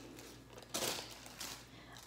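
Tissue paper handled by hand: one short rustle about three-quarters of a second in, then a fainter rustle.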